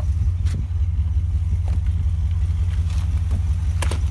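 The RV's onboard generator engine running at a steady idle, a loud low drone. The RV door's latch clicks twice, about half a second in and again just before the end.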